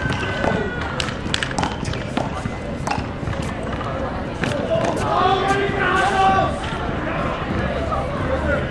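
Men's voices talking and calling out on an outdoor handball court, loudest a little past the middle. Several sharp taps on the concrete come in the first three seconds.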